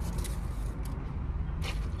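Low, steady rumble of a car's engine and running gear heard inside the cabin, with a few light clicks and rustles.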